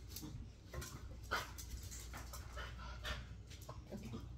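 Beagle panting in a series of short, irregular breaths while it moves about begging for a treat.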